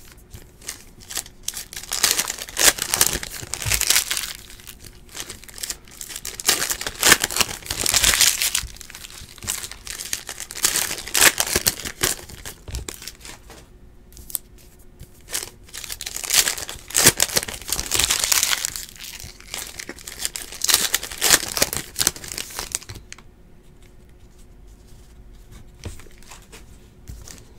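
Foil wrappers of Donruss Optic basketball card packs being torn open and crinkled by hand, in repeated bursts of tearing and crackling, one pack after another; it dies down near the end.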